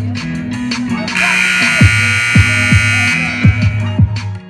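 Hip-hop music with a beat and deep sliding bass notes; about a second in, a gym scoreboard buzzer sounds for about two seconds, the horn marking the end of the half.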